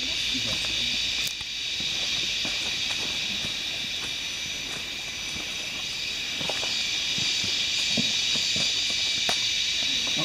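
Forest insects buzzing in a steady, high-pitched chorus, with people's voices faint underneath.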